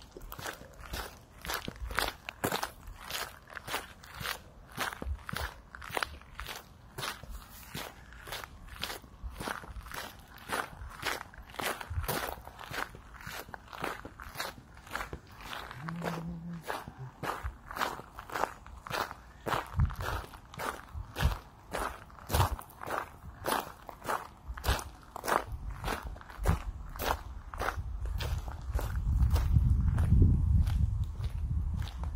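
Footsteps crunching on a gravel path at a steady walking pace, about two steps a second. A low rumble builds near the end.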